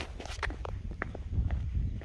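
Footsteps of a person walking, short sharp steps about every half second over a low rumble from the handheld phone's microphone.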